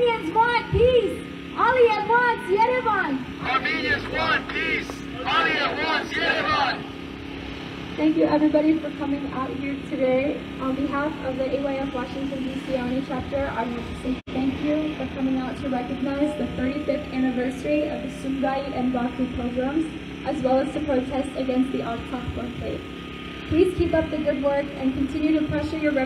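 Speech: a woman talking into a microphone, her voice amplified through a loudspeaker.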